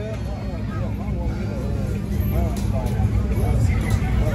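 Indistinct voices of people talking over a steady low rumble, growing slightly louder toward the end.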